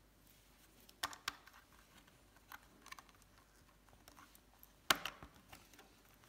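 Plastic LEGO bricks clicking together as they are handled and pressed onto a build by hand: a few light scattered clicks, with the sharpest snap near the end.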